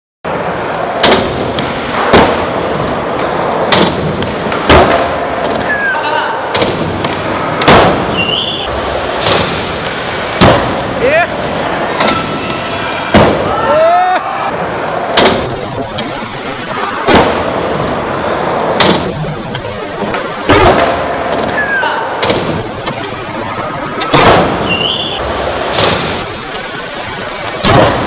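Skateboard wheels rolling on a concrete floor, broken every second or two by sharp clacks and thuds of the board, tail pops and landings from flip tricks, with a short echo from a large indoor hall.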